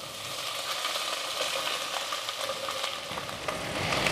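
Chopped okra frying in hot oil in a pot: a steady sizzling hiss with small crackles.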